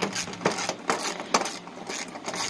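Caster wheels and metal fittings on a hard case rattling and clicking as the case is handled, with a sharp click about every half second.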